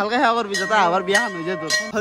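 A voice talking over a bell ringing in the background. The bell starts about half a second in and its tone holds steady.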